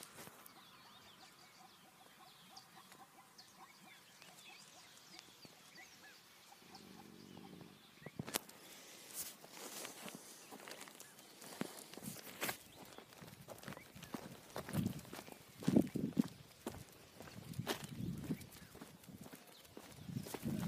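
Quiet outdoor background at first. From about eight seconds in come irregular clicks, knocks and low thuds of a hand-held phone being moved and jostled, with footsteps on grass.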